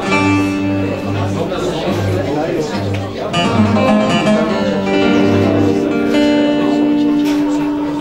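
Acoustic guitar playing, with a low note plucked repeatedly and sustained ringing notes over it.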